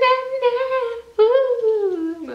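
A woman's wordless humming in long held notes: one steady note for about the first second, then after a short break a note that rises slightly and slides down.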